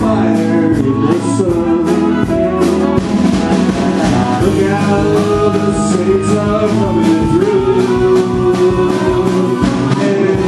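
Live blues band playing a slow song with electric guitar, harmonica and drum kit keeping a steady beat, and a man singing.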